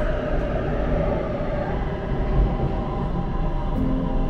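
Bangkok MRT Blue Line subway train running underground, heard from inside the carriage: a steady rumble of wheels on rail and running gear.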